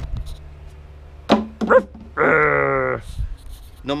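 A dog barking: two short barks a little over a second in, then one longer call that falls in pitch.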